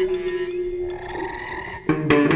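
Jazz-fusion band improvising live: a long held note fades out about halfway, leaving a sparse, quieter stretch of electric-guitar effects, then the full band with guitar and bass comes back in sharply just before the end.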